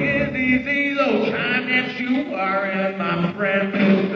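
Live rock band recording: a male voice sings long, wavering notes over thinned-out accompaniment, the band's low end dropping away about a second in.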